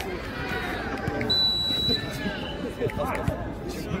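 Overlapping voices of players and onlookers talking and calling out across the outdoor jokgu courts, with a short steady high tone about a second and a half in.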